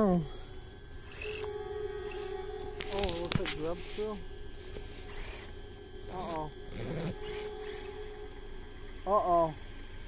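Short wordless vocal sounds from a person, heard several times, with a cluster of sharp clicks about three seconds in.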